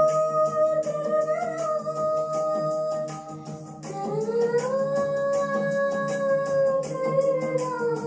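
A young girl singing solo into a microphone, holding two long notes: the first breaks off about three seconds in, the second slides up a second later and eases down near the end. Backing music with a steady ticking beat plays underneath.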